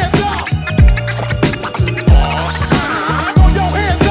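Hip-hop beat with turntable scratching: three heavy kick-drum hits about 1.3 seconds apart over a sustained bass line, with scratches gliding rapidly up and down in pitch, thickest around three seconds in.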